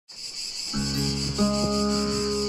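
Cicadas yelling steadily in a high, even drone, with a fingerpicked acoustic guitar coming in under a second in and a new set of notes ringing out at about a second and a half.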